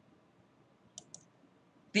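Two quick clicks of a computer mouse about a second in, close together, over an otherwise quiet room; a voice starts speaking right at the end.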